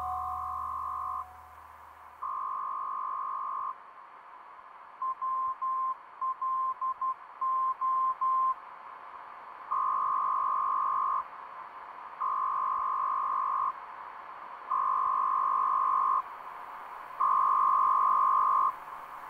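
A single steady electronic beep tone, fairly high-pitched, in long beeps of about a second and a half spaced a second apart. About five seconds in, the long beeps give way to a run of quick short beeps, then the long beeps return.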